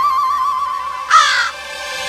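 Background music holding one steady note, then a single loud, harsh crow caw a little over a second in.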